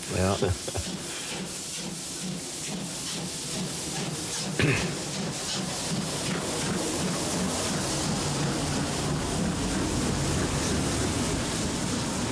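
DB class 012 three-cylinder steam locomotive pulling its train away from a station, with regular exhaust beats over a steady hiss of steam, slowly growing louder.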